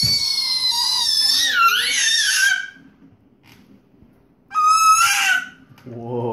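A baby's long, very high-pitched, wavering squeal lasting nearly three seconds, then a second, shorter squeal that rises in pitch about four and a half seconds in.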